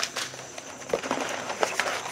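Rummaging through paper seed packets and packaging: soft rustles and a few light clicks and crinkles.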